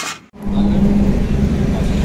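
Steady low rumble of a running motor vehicle engine, starting suddenly about half a second in.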